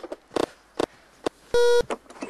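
A few short, clipped bits of sound, then near the end a loud electronic beep lasting about a third of a second, a single buzzy tone that stops abruptly.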